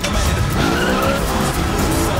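A car's engine revving and its tyres skidding, the pitch climbing then easing off in the middle, over loud trailer music.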